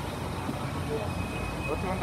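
Steady city street traffic noise: vehicle engines running and road rumble, with a person's voice starting near the end.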